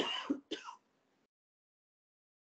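A man clearing his throat in two short bursts within the first second.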